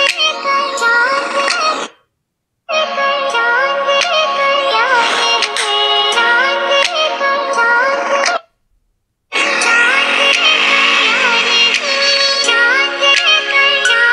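Pop music with a sung, electronically processed vocal played through smartphone loudspeakers, thin and without bass. It cuts out completely twice for under a second, about two seconds in and again past eight seconds.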